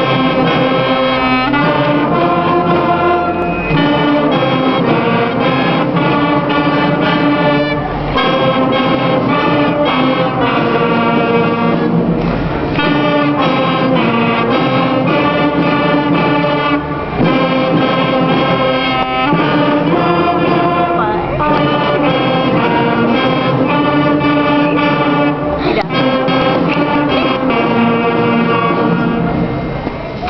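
School concert band playing a piece, clarinets among the instruments, sustained notes moving through changing chords.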